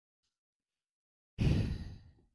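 A woman's sigh of despair: after near silence, a sudden breath out starts about two-thirds of the way in and fades quickly.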